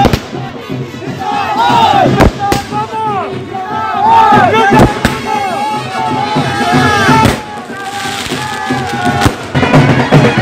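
Firecrackers going off, about half a dozen sharp bangs, over band music and a noisy crowd.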